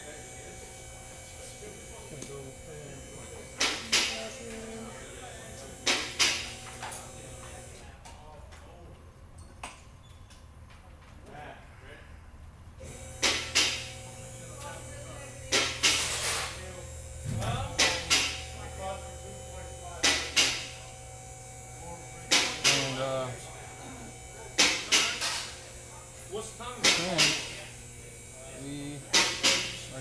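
Metallic clinks and knocks from a timing chain and engine parts being handled on a bare engine, coming every few seconds, some in quick pairs, over a steady low hum.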